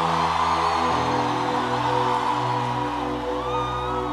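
Keyboard holding sustained chords, changing chord about a second in, under a congregation shouting and cheering.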